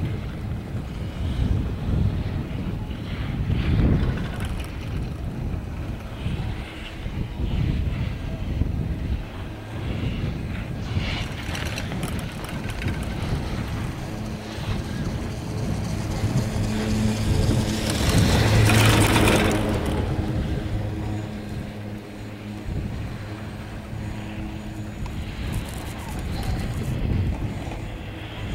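Wind buffeting the microphone during a chairlift ride, a gusty low rumble throughout, with a louder swell of noise a little past halfway.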